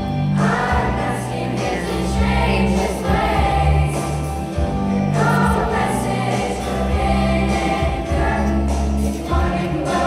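Youth show choir singing together over instrumental accompaniment with a strong bass line.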